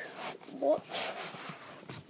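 A domestic cat hissing: a short breathy rasp about a second in.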